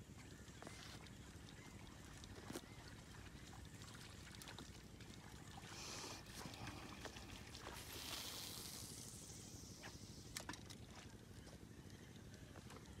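Faint water splashes from a snakehead striking at a frog lure on the surface, the first about halfway through and a louder, longer one about two seconds later, over a low steady background.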